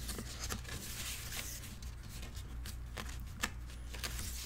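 Paper rustling with light taps and clicks as the pages of a handmade paper mini album are handled, a coffee-dyed paper page being turned near the end, over a low steady hum.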